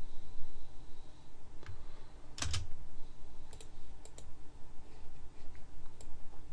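Scattered clicks of a computer keyboard and mouse at a desk: a handful of separate clicks, the loudest a close pair about two and a half seconds in, over a faint steady background tone.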